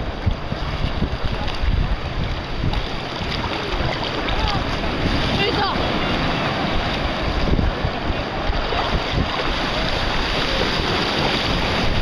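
Small waves breaking and washing in shallow surf close to the microphone, with wind buffeting the microphone.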